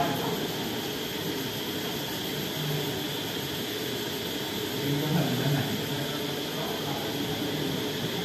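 Steady fan-like room noise with a faint hiss, with brief, faint, indistinct voices twice.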